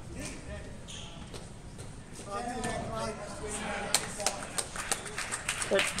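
Faint voices from the squash arena. About four seconds in they are joined by a quick run of sharp knocks and clicks.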